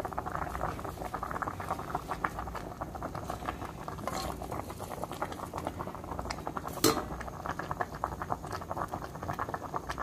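Tom yum fish soup boiling hard in an aluminium pot: dense, steady bubbling made of many small pops. A single sharp click stands out a little before seven seconds in.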